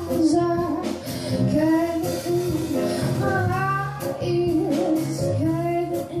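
A woman singing live into a microphone while playing the piano, with drums playing along.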